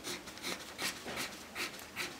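Pencil scratching on paper in a run of quick, evenly spaced strokes, about three a second, as a drawn plane is hatched in.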